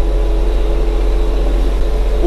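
Tümosan 6065 tractor's diesel engine running steadily under way, heard from inside its cab as an even drone with a steady hum.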